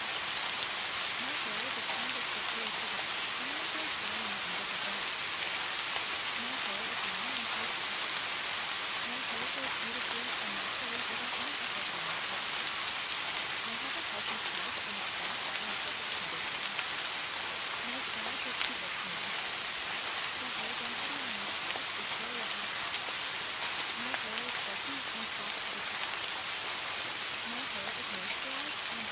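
Steady rain ambience with a faint voice speaking quietly beneath it: the buried spoken affirmations of a subliminal track. A couple of brief clicks stand out from the hiss.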